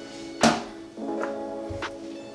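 A small glass prep bowl knocking down onto a wooden cutting board: one sharp knock about half a second in, then a couple of lighter taps, over steady background music.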